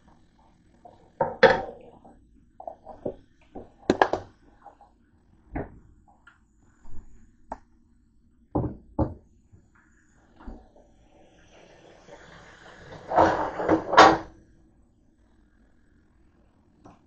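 Kitchen handling noises: a string of separate knocks and clatters as things are picked up and set down, with a longer rattling, clattering stretch near the end that is the loudest.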